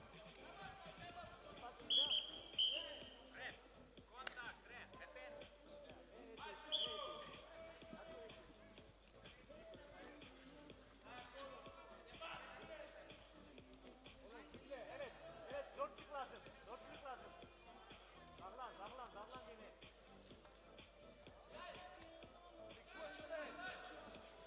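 Wrestling hall ambience: distant voices calling out through the bout, scattered dull thuds of bodies and feet on the mat, and short shrill high-pitched blasts twice about two seconds in and once more near seven seconds, these being the loudest sounds.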